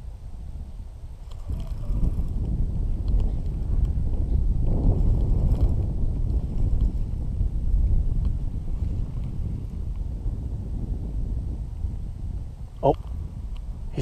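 Wind buffeting the microphone: a low rumble that builds a second or two in and is strongest through the middle, easing off toward the end.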